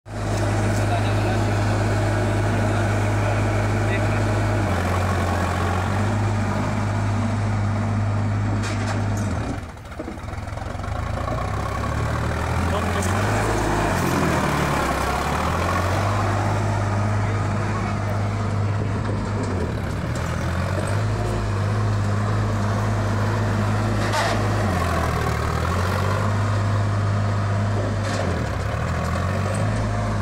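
Sonalika DI 745 III tractor's diesel engine running under load while it drives a rotavator through dry soil; the engine note dips and recovers several times.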